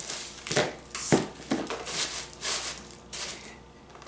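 Tissue paper crinkling and rustling as it is handled and folded over a basket stuffed with paper shred, in a run of short bursts that die down near the end.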